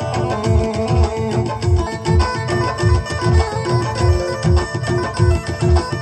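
Instrumental interlude of Rajasthani folk devotional music: a hand drum beats a steady, driving rhythm under a short note repeated in time, with sharp clicks riding on the beat.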